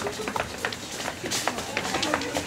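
Irregular footsteps and shuffling on a stage floor as several performers move about, with low voices in the background.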